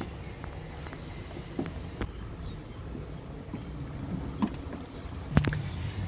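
A screwdriver working the screws out of a plastic boot-lid trim panel: a few faint, scattered clicks over a steady low rumble.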